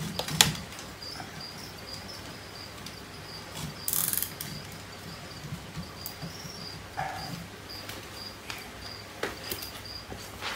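A plastic zip tie is ratcheted tight around a wooden perch in a glass terrarium, with a short burst of rapid clicking about four seconds in. Sharp knocks of the branch against the enclosure come with it, the loudest about half a second in, over a cricket chirping steadily a couple of times a second.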